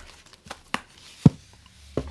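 A closed ring budget binder being handled and put down on a desk: a couple of light clicks, then a dull thump a little past a second in, the loudest sound, and another knock near the end as it is stood upright among other binders.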